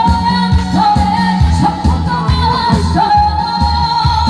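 A woman singing live into a handheld microphone, held notes with bends between them, over amplified accompaniment with a steady beat.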